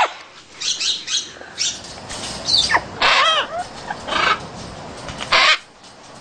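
Young macaws squawking: a string of short, harsh calls, some bending in pitch, the loudest about five seconds in.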